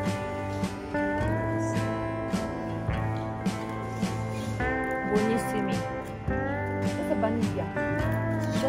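Background music: guitar with notes that slide upward, over a steady beat. Faint voices can be heard under it in the second half.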